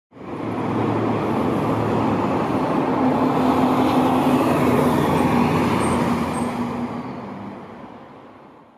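City street traffic noise with a steady low engine hum from a vehicle nearby; it fades in at the start and fades away over the last couple of seconds.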